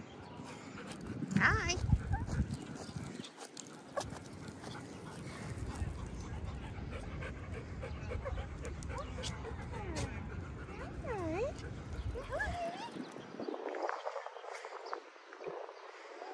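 Dog whining: a few short, high whines that dip and rise in pitch, about eleven and twelve seconds in. Before them is a loud, sharp sound about two seconds in, and then a steady low rumble.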